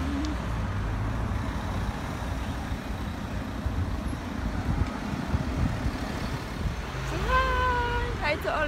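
Low, steady rumble of a road vehicle running. A brief held pitched tone comes in near the end.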